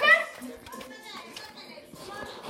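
A child's loud, high-pitched excited shout right at the start, gliding up and then falling. Softer voice sounds and light clicks follow.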